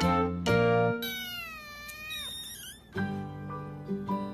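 Background music, broken off after about a second by one drawn-out kitten meow that falls in pitch; the music comes back near the end.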